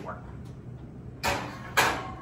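Oven door pulled open and the baking dish slid into the oven: two short scraping noises about a second and a half in, the second louder.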